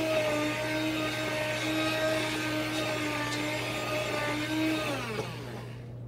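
Handheld immersion blender running steadily in a pot of carrot soup, pureeing it, with an even motor hum. About five seconds in, the motor winds down with a falling pitch and stops.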